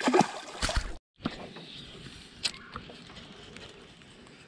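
Largemouth bass released back into the pond, splashing at the surface for about a second. The sound then cuts off abruptly and gives way to faint background noise with one sharp click.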